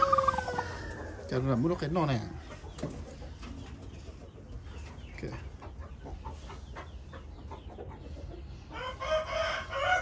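A hen sitting on her eggs in a wooden nest box gives clucking, squawking calls as a hand reaches in toward the eggs. There are calls near the start and again near the end, with faint rustling between.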